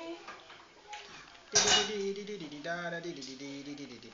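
Tableware clinking, with a sudden sharp clink about a second and a half in. A voice without words follows until near the end.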